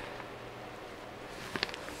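Quiet room tone with a few faint clicks about one and a half seconds in.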